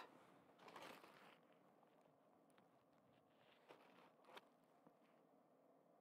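Near silence, with a few faint brief clicks: one about a second in and two more around four seconds in.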